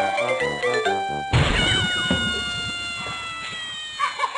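Cartoon background music with a bouncy, steady bass line, cut off about a second in by a sudden crash sound effect. A ringing chord follows it, slowly sliding down in pitch and fading away.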